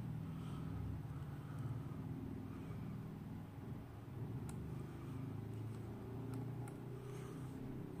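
Steady low background hum, with a few faint clicks from the buttons being pressed on a gaming headset's earcup.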